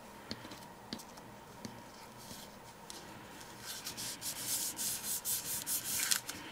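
Fingers rubbing and pressing on cardstock, pressing down a freshly hot-glued paper layer so the glue sets. A few faint taps come first, then a quick run of scratchy rubbing strokes over the last two seconds or so.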